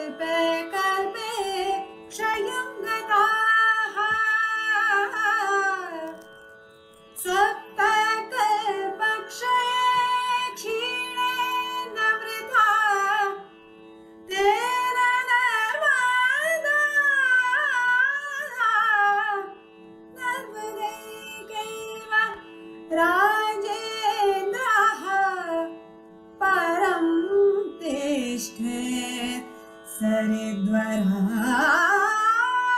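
A woman singing a Carnatic-style Sanskrit verse in long phrases with gliding, ornamented pitch and short pauses between them, over a steady drone.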